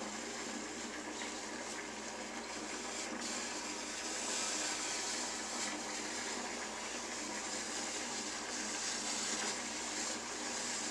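Small handheld steamer running, a steady hiss of steam played over a yarn braid to set a curl; a little louder from about four seconds in.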